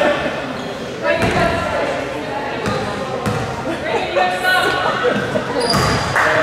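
A basketball bouncing on a hardwood gym floor a few times, about a second in, again past three seconds and near the end, over people's voices calling out in the gym.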